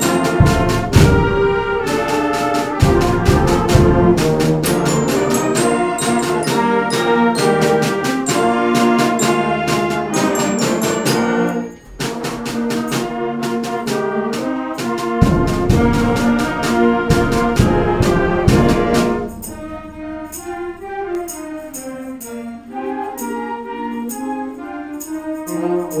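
School concert band playing a march in rehearsal, brass carrying the tune over steady snare and bass drum strokes. The band breaks off briefly about halfway through, comes back loud, then drops to a quieter passage for the last quarter.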